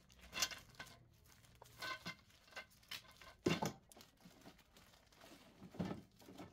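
Plastic wrapping crinkling and tearing as bundled trellis poles are handled and unwrapped, in a few short rustles, the loudest about three and a half seconds in.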